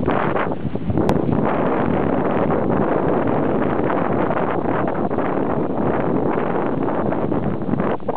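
Dogsled running over a packed snow trail: a steady rushing noise of the runners on snow and wind on the microphone, with one sharp click about a second in.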